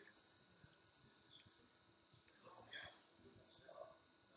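Near silence: faint room tone with about four soft, short clicks and a faint steady high tone.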